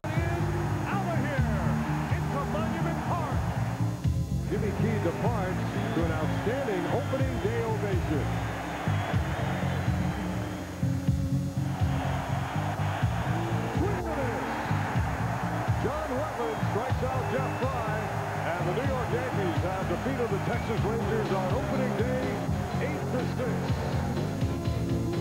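Background music for a highlights montage, steady throughout, with indistinct voices mixed in.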